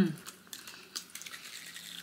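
A hummed "mmm" of tasting trails off at the start, then a quiet room with a few faint, short clicks and small mouth sounds of eating.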